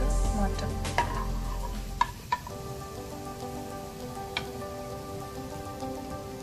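A few sharp clinks of a metal spoon against a pan of gulab jamun in sugar syrup, over a faint steady background hiss.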